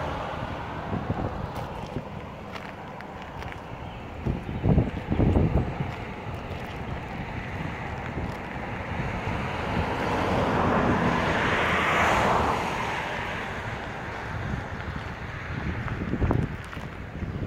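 Wind buffeting the microphone: a steady rumble with a few stronger gusts about four to five seconds in, and a broad rushing swell that peaks about twelve seconds in.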